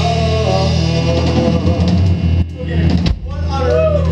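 Live rock band playing loud, with electric guitars, bass guitar and drums; the sound dips briefly twice in the second half.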